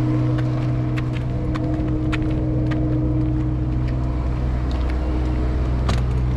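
Parked motorhome running with a steady low mechanical hum, over scattered sharp clicks of footsteps on asphalt.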